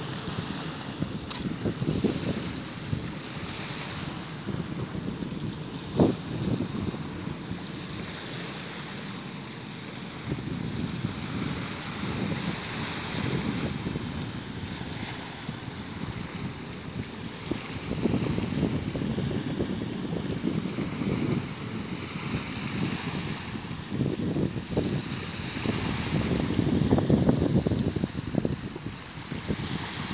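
Small waves washing in over a pebble beach, with gusty wind buffeting the microphone in uneven surges that grow stronger near the end. There is a single sharp knock about six seconds in.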